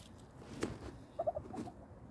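A domestic hen clucking softly: a quick run of three short clucks just over a second in, then one more.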